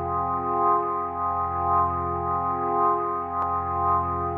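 Song intro: a sustained organ chord, held without change, swelling gently about once a second.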